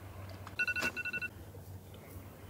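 iPhone alarm going off: a short, fast run of high electronic beeps about half a second in, stopping within a second, with a single click among them.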